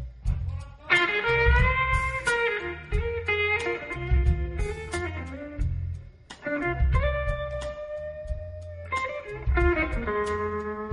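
Blues band playing softly at a lowered volume, with an electric lead guitar soloing in bent and sustained notes over bass, drums and a steady cymbal pulse. About seven seconds in, the lead holds one long note for around two seconds.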